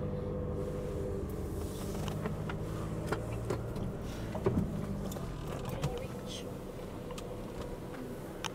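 VW Crafter van running at low speed, heard from inside the cab as a low steady hum, with a few faint clicks.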